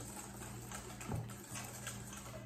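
Wire whisk beating egg yolks with sugar and cornstarch in a metal bowl: light, rapid taps and scrapes of the wires against the bowl.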